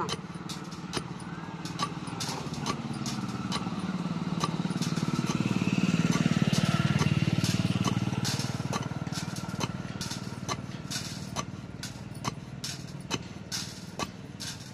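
Wooden pestle pounding pearl millet in a mortar, a run of dull knocks one to two a second, done to loosen husk, sand and dirt before winnowing. Under it a passing motor vehicle's engine swells to its loudest about halfway through and fades away.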